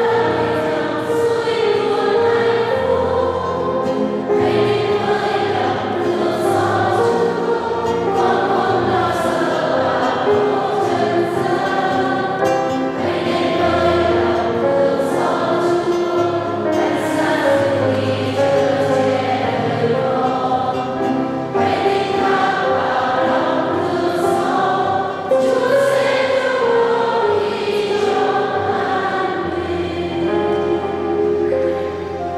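Choir singing a hymn, accompanied by piano and acoustic guitar, with steady sustained bass notes under the voices.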